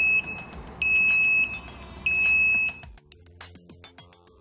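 Warning buzzer of a TWIN BUSCH TW S3-10E scissor lift beeping as the lift lowers: a steady high beep repeating about every 1.25 seconds, the tail of one beep and then two full ones, over a low hum. An electronic music jingle starts near the end.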